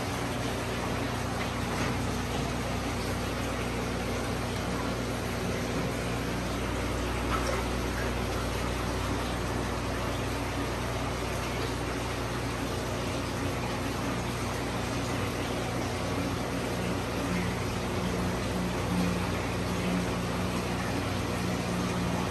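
Steady whir and hum of fish-room equipment: electric fans and aquarium pumps running together, with a constant low hum underneath and no distinct events.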